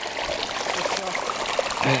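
A torrent of muddy runoff water streaming steadily down over the ground, a continuous even rush.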